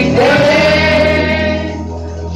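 A woman sings a slow gospel hymn into a microphone, holding long notes over a low, steady bass note.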